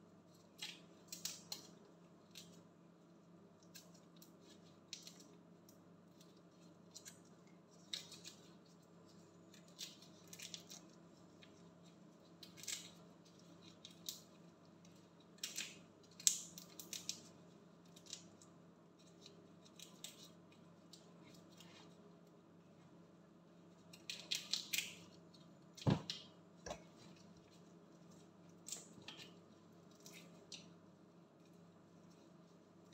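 Faint, irregular crackles and snaps of raw shrimp shells being peeled off by gloved hands, over a steady low hum. Late on there is one sharper knock.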